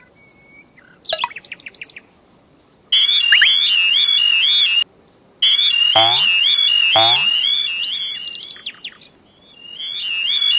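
Electronic warbling alarm of a British level crossing, a high repeating warble that cuts out briefly in the middle and fades near the end. Two deep falling swoops sound under it about six and seven seconds in.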